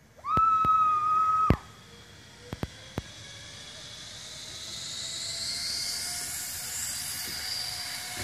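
A high, steady squeal lasting about a second near the start, then a few sharp clicks, then a zipline trolley's pulley wheels running along the steel cable: a whirring hiss that grows steadily louder as the rider comes nearer.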